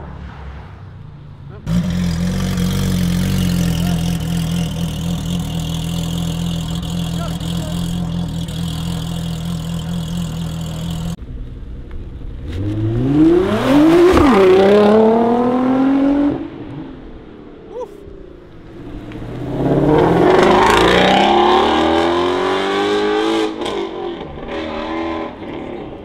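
Sports car engines. First a steady engine note holds for about nine seconds and stops abruptly. Then an engine revs up with its pitch rising, drops at a gear change and rises again, and near the end another car accelerates hard.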